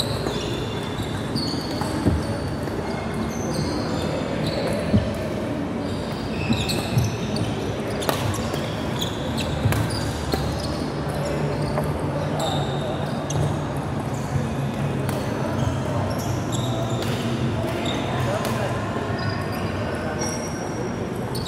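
Badminton rally on a wooden indoor court: sharp racket strikes on the shuttlecock and many short, high squeaks of court shoes, echoing in a large hall over a steady low hum.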